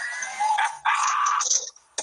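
People laughing, with a loud, high-pitched burst of laughter about a second in.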